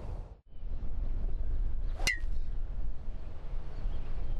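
A golf club striking the ball off the tee on a drive: one sharp click with a brief ring about two seconds in, over a low steady background rumble.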